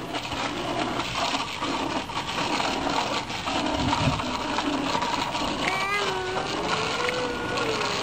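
A small child's bicycle rolling over concrete: a steady rattly rumble of the wheels and bike. A faint voice comes in about six seconds in.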